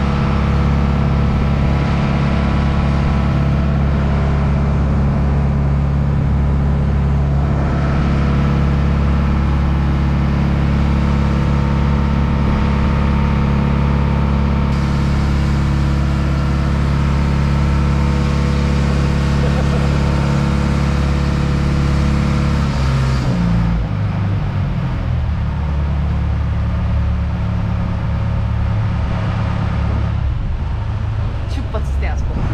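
A small river ferry's diesel engine running steadily under way. About 23 seconds in its note drops as the boat throttles back, then it runs on at a lower, steady pitch.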